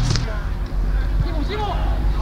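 Low steady rumble of pitch-side ambience with faint, distant voices of players calling during play.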